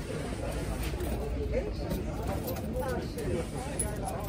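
Indistinct talk among people close by, over a steady background noise.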